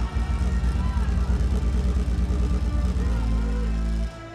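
Loud live electronic music over a stage PA, dominated by a heavy, distorted bass as picked up by a camcorder microphone.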